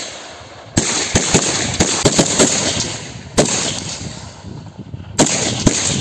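Kalashnikov-type assault rifles firing single shots at an irregular pace, with several loud reports among many fainter shots.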